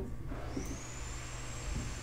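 Steady room noise with a low hum, joined about half a second in by a thin, high, steady whine. No distinct marker strokes stand out.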